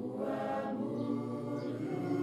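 A choir singing, several voices holding long, sustained notes.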